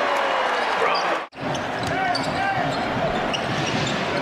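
Arena game sound of a basketball game: a ball bouncing on the hardwood court over the steady noise of the crowd. The sound drops out for an instant about a third of the way in.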